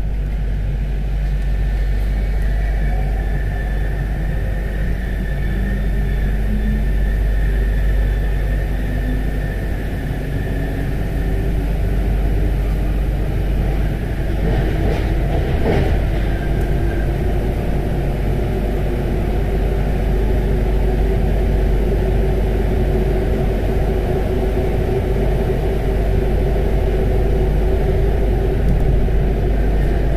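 Paris Métro MP05 rubber-tyred train running through a tunnel, heard from inside at the front: a steady rumble with a faint motor whine. About halfway through comes a short cluster of clacks as it runs over the points.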